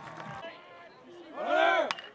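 A loud shout from the crowd that rises and falls in pitch, cut off by a sharp crack of a bat hitting a pitched baseball near the end, over a low murmur of crowd voices.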